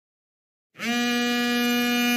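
Silence, then a single steady buzzing telephone ring, a sound effect, starting about three-quarters of a second in and holding for about a second and a half: an incoming call about to be answered.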